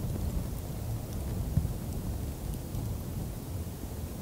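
Low, steady rumble of wind buffeting the camera microphone outdoors, with one faint tick about one and a half seconds in.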